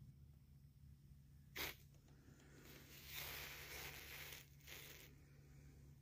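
Near silence: a faint steady low hum, with one short sharp rustle about a second and a half in and softer rustling around the middle.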